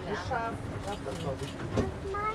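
Indistinct talking by people close by, over a low steady rumble of the vehicle running.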